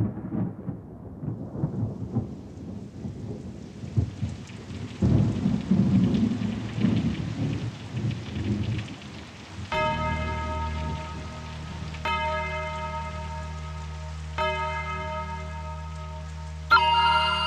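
Rain and rolling thunder as a song's opening sound effect, the thunder loudest about five to seven seconds in. About ten seconds in a bell-like tone begins to toll roughly every two and a half seconds over a low steady drone.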